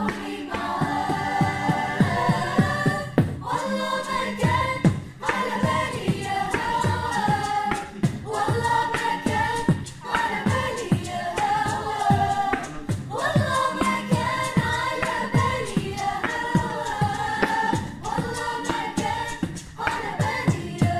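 A cappella mixed choir singing an Arabic song in several-part harmony, phrase after phrase, over a steady beatboxed beat.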